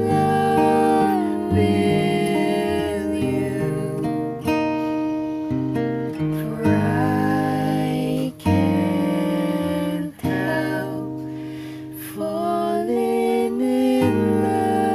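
Acoustic guitar playing a slow ballad, with a voice singing along; the music briefly dips twice in the second half.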